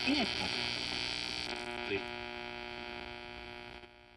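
Riptunes RACR-510BTS boombox's AM radio being tuned: a faint voice at first, then a steady humming whine of interference that shifts pitch about halfway and fades out near the end, as the radio picks up little.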